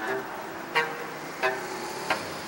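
Bass clarinet music: a held note fades out at the start, then come two short, sharp staccato notes about two-thirds of a second apart over a steady hiss.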